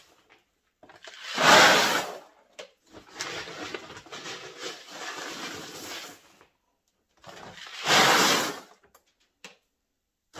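Scoops of dry goods poured from a stainless steel scooper into a Mylar bag lining a plastic bucket: two loud rushing pours of about a second each, one near the start and one near the end, with quieter scraping and rustling of the scooper digging into the sack between them.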